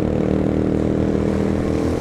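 Motorcycle engine running at steady road speed, a steady humming engine note over wind and road noise.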